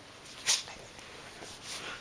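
A Keeshond snuffling and sniffing right against the phone's microphone: a sharp, loud sniff about half a second in and a softer snuffle near the end.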